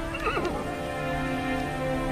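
A horse whinnies briefly near the start, a short wavering call, over background music with soft sustained tones.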